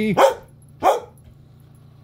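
A dog barks twice, two short sharp barks about two-thirds of a second apart: demand barking for her walk.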